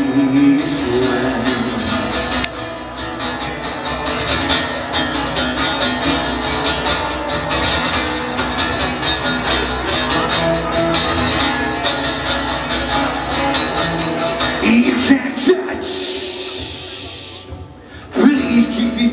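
Acoustic guitar strummed steadily in a live solo performance, dying away over the last couple of seconds.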